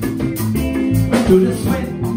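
Live jazz band playing a Latin-groove tune: electric guitar, electric bass, drums and keyboard, with alto saxophone, between vocal lines.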